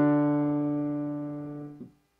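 Piano holding the final chord of a two-part dictation example in D major: the octave D3 and D4, struck just before and fading steadily, released shortly before the end.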